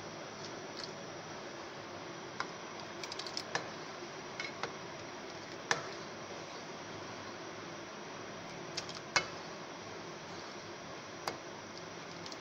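A spoon stirring custard in a metal pot, knocking against the pot's side in scattered sharp clicks, sometimes several in quick succession, over a steady low hiss.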